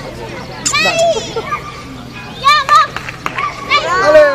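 High-pitched voices calling out in short bursts, about a second in and again about two and a half seconds in, over outdoor background noise.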